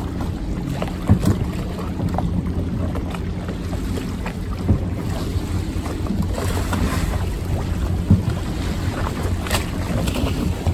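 Water lapping around moored gondolas, with wind buffeting the microphone in a steady low rumble. A few sharp knocks stand out, about three, spaced a few seconds apart.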